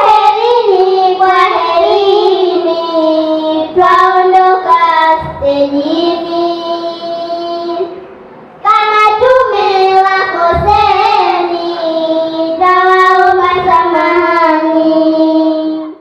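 Young girls singing a Swahili utenzi (sung verse) into microphones, in long held, gliding notes over two phrases with a short breath-break about eight seconds in; the sound fades out at the end.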